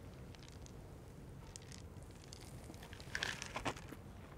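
Faint sounds of milk and Froot Loops cereal being tipped from a CrunchCup cereal cup into the mouth. A few soft, short crunching sounds come about three seconds in.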